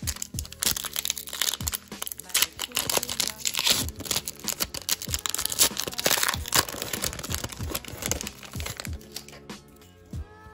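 Foil Pokémon booster pack wrapper crinkling and crackling as it is torn open by hand. It goes on in a dense run of small crackles that thins out near the end, with background music under it.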